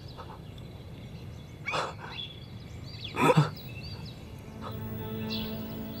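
A man's distressed crying voice, two short sobbing outbursts, over faint bird chirps; soft background score music fades in about two-thirds of the way through.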